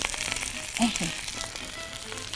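Chicken-and-zucchini kofta patties sizzling in shallow oil in a cast-iron skillet. They are already browned and are frying gently over lowered heat to cook through.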